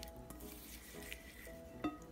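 Soft background music with the faint sound of a silicone whisk stirring butter, sugar and olive oil in a glass bowl, and one light click near the end.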